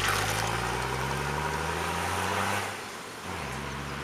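Off-road rally 4x4's engine under power, its pitch climbing slowly for about two and a half seconds, then falling away near three seconds and running steadier.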